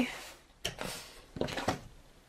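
A few light clicks and knocks of handling noise: one sharp click about half a second in, then a short cluster of clicks a second later.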